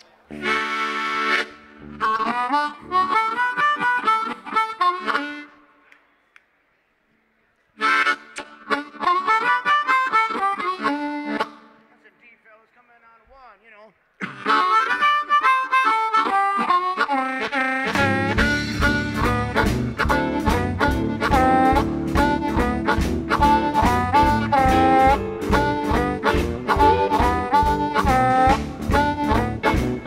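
Blues harmonica playing alone in short phrases separated by brief pauses. The full band (drums, bass and guitar) comes in about eighteen seconds in and carries on at a steady beat behind it.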